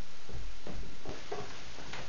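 Soft low thuds of footsteps in a small room over steady room noise, a few about half a second and a second in.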